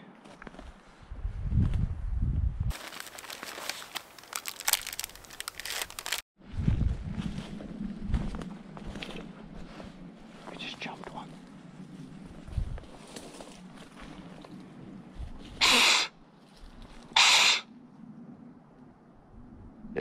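Crunching and rustling of someone moving through snowy brush, with scattered low thumps. Near the end there are two short, loud bursts of noise about a second and a half apart.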